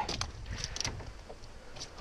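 Wind rumbling on the microphone, with a few light clicks and taps as the landing net holding a freshly caught fish is handled on the rowboat's floor.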